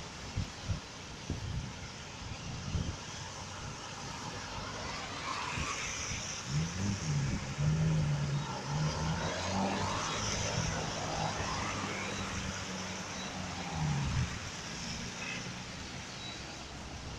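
Car driving on a wet road, heard from inside the cabin: steady tyre and road noise, with a few knocks in the first few seconds and an engine note that rises and falls from about six seconds in until near the end.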